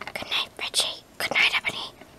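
A person whispering in three short breathy bursts, too soft to make out words.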